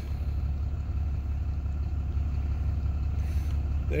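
Ram 2500 pickup's engine idling steadily, heard from inside the cab as an even low rumble.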